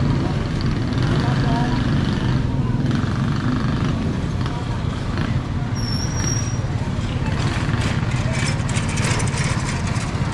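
Street traffic ambience: a small motorcycle engine, such as a tricycle's, running with a steady low hum, with voices of people talking around it. A brief high-pitched squeak about six seconds in, and a rattling clatter in the last few seconds.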